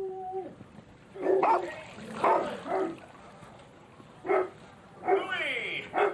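A dog barking in short yaps about four times, then a longer falling whine near the end.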